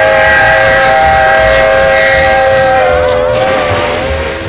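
A loud held chord of several steady tones, lasting about three and a half seconds and wavering slightly near the end.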